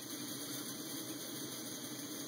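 MSR Whisperlite liquid-fuel stove burning 91% isopropyl alcohol through its kerosene jet drilled out with a #68 bit, giving a steady rushing hiss of the burner flame.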